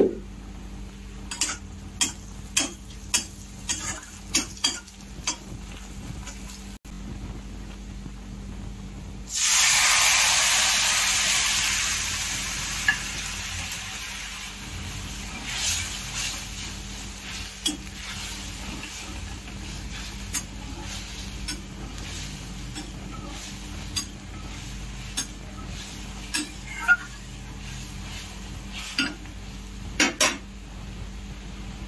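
A metal spatula clinks and scrapes against a kadai as spiced food is stir-fried, about twice a second at first. About nine seconds in, a sudden loud sizzle as a wet ingredient hits the hot oil; it fades over a few seconds into a steady frying sizzle with occasional spatula knocks.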